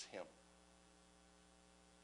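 Near silence: room tone with a faint steady electrical hum, just after a man's last spoken word ends.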